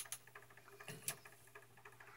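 Faint, irregular light clicks and scratches of eggshells and a candling light being handled against a plastic incubator tray, over a low steady hum.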